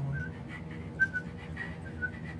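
A person whistling a few short, high chirping notes in imitation of a bird's song.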